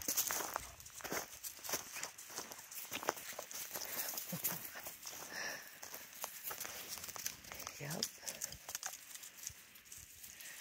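Irregular crunching of footsteps and dog paws on dry leaf litter, twigs and gravel, a scatter of small sharp clicks and crackles. A short laugh comes near the end.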